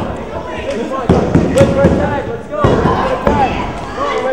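Wrestlers' bodies hitting the ring canvas: three sharp thuds, about a second in, past halfway and near the end, mixed with shouting voices from the crowd.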